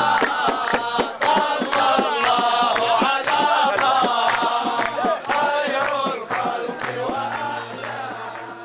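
A group of men chanting and singing together over sharp rhythmic beats, about two to three a second. The sound fades near the end.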